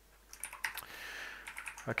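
Typing on a computer keyboard: a quick, uneven run of key clicks that begins about a third of a second in.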